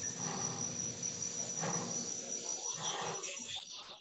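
A steady high-pitched tone, like an insect trill, over faint background noise, heard through a video-call connection.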